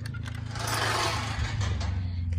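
A wooden pen gate being swung open, with a drawn-out scraping rasp that builds about half a second in and fades near the end, over a steady low hum.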